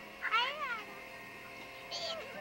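A single short meow-like call, rising and then falling in pitch, lasting about half a second, followed by a brief high sound right at the end.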